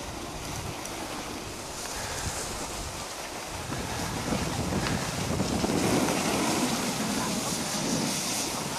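Wind rushing and buffeting on the camera microphone, getting louder in the second half.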